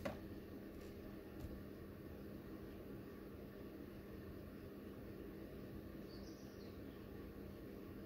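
Faint room tone with a steady low hum and no distinct sound events.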